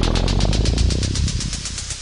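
Synthesized sweep sound effect: filtered noise pulsing rhythmically, about ten pulses a second, over a low rumble. Its upper range fades away as the filter closes, and the whole sound dies down near the end.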